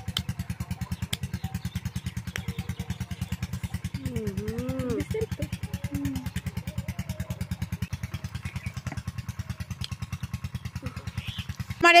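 A small engine running steadily off-camera, a rapid, even low thumping. A short vocal sound comes about four seconds in.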